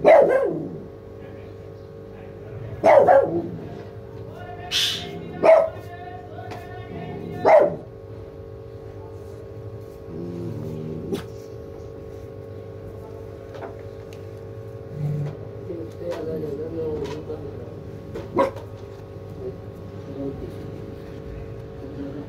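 A dog barking four times in the first eight seconds, each bark sliding down in pitch, then fainter whining sounds later on, over a steady background hum.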